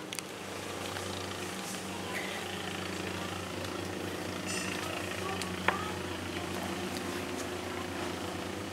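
A steady low engine or machine hum, with one sharp click a little before the sixth second.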